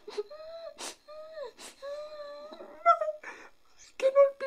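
A man's theatrical mock crying: several long, wavering wails, each broken by a sharp, sobbing gasp of breath.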